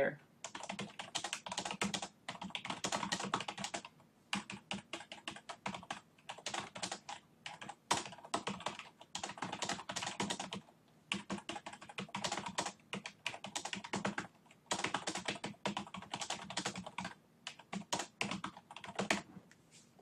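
Typing on a computer keyboard: rapid key clicks in runs, broken by a few short pauses.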